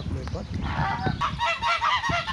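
Brown Chinese geese honking: a quick run of short calls, several a second, starting about a second in.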